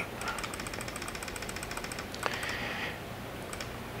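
Computer keyboard clicking in a fast, even run, as photos are stepped through one after another. The clicks stop about three seconds in.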